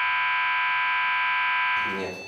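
Perimeter intrusion alarm buzzer of a security monitoring system, sounding one steady tone that fades out near the end: the signal that a fence sensor has been triggered.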